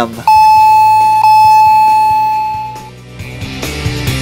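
A chime tone sounds twice at the same pitch, about a second apart, and rings out, fading away over the next couple of seconds. Background music comes in near the end.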